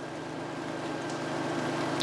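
Steady low hum under a faint hiss, slowly getting louder: the background noise of an outdoor street feed, with traffic-like engine rumble.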